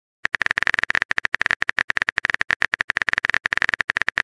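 Smartphone keyboard typing sound effect: a rapid, slightly uneven stream of short, bright key clicks, many per second, starting about a quarter second in as a text message is typed out.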